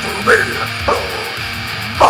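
Live heavy metal band playing, with short harsh, rasping vocal shouts from the singer over the guitars and drums.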